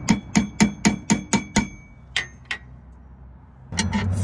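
A hammer taps a steel pipe nipple extractor into a broken pipe stub on a surface cleaner's spray bar, driving it in so it will bite and grip. There is a quick run of about eight metal-on-metal strikes, roughly four a second, each with a short ring, then two lighter taps.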